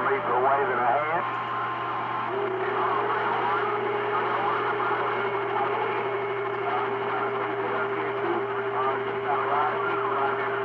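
CB radio receiving channel 28 (27.285 MHz): faint, garbled voices of distant stations coming through the noise. A short steady tone sounds about a second in, and then a steady whistling tone runs on under the voices from about two seconds in.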